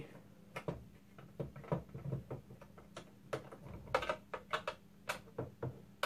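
Light, irregular clicks and taps of a plastic airsoft drum magazine being handled as its small front-cover screws are undone, a dozen or more short ticks, over a faint steady low hum.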